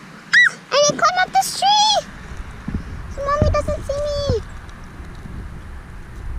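A child's wordless, high-pitched vocal sounds, short squeals and hummed rising-and-falling notes, in two bursts, the second ending in one longer held note that falls away.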